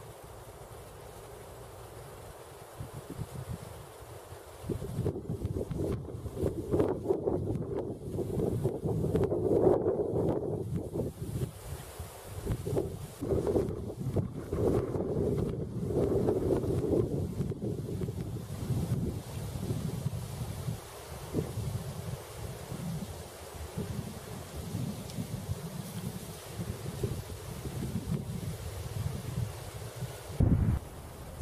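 Wind buffeting the microphone outdoors: a faint steady hiss at first, then from about five seconds in an uneven, gusting low rumble that rises and falls.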